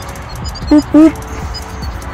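A man's voice: two short syllables about a second in, over faint background music.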